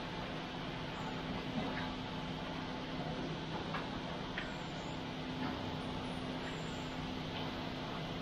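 Steady hum of an idling engine, even in level throughout, with a few faint short ticks over it.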